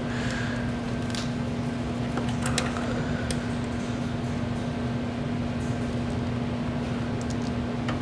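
Steady background hum with a single low droning tone, with a few light clicks and rustles in the first few seconds as a power cord is handled.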